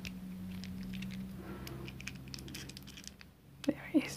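Faint small clicks and scrapes of a lino cutter's metal blade being worked out of and into its handle while the blade is changed, with two short louder sounds near the end.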